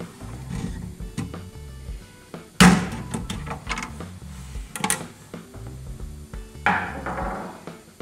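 A few sharp metallic clicks and knocks from a small screwdriver prying the circlip off a steel release-lever axle inside an aluminium pannier case. The loudest comes about two and a half seconds in and rings briefly. Background music runs underneath.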